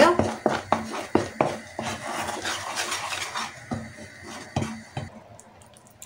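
Wooden spoon stirring and scraping foaming caramel syrup in a nonstick frying pan, with irregular knocks of the spoon against the pan over a steady hiss from the bubbling sugar. The stirring dies down about five seconds in.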